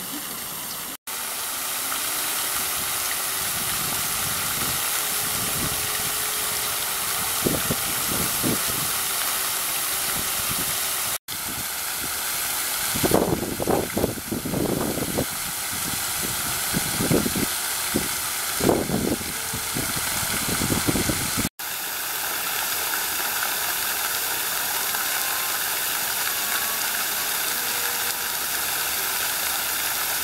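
Park fountain's many water jets spraying and falling into the pool: a loud, steady hiss of water spray. In the middle stretch, irregular louder low bursts break through the hiss, and the sound drops out for an instant three times.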